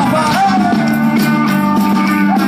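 Live band music at a concert, loud and steady, heard from within the crowd, with a sliding melodic line about half a second in.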